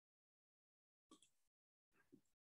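Near silence, with one very faint, short noise a little after a second in.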